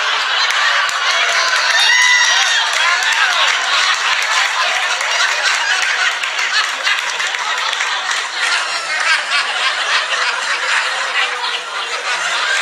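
A crowd laughing and chuckling, with scattered clapping: a laugh track following a joke's punchline.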